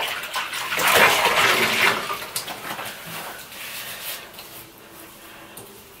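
Soapy bathwater sloshing and splashing as a synthetic wig is dipped in and out of a bathtub, loudest about a second in and dying away near the end.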